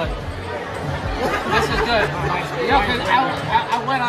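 Restaurant chatter: overlapping conversation of nearby voices filling a busy dining room, with a few short sharp knocks in the second half.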